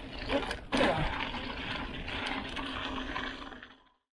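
Mountain bike riding down a dirt trail, heard through an action camera's microphone: a steady rush of wind and tyre noise with scattered rattles and clicks from the bike, louder just under a second in, then fading out near the end.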